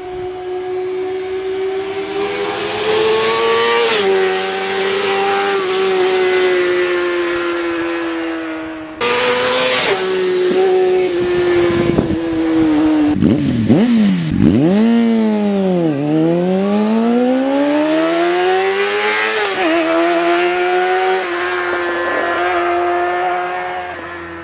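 Small motorcycle engine revved hard and held at high revs, its pitch wavering slightly. About midway the revs drop sharply and climb straight back up. There is an abrupt jump in loudness about nine seconds in.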